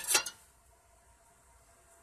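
A brief sound right at the start, then near silence: room tone.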